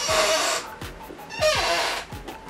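A woman's two breathy sighs, the second falling in pitch, as she smells a hair mask, over quiet background music.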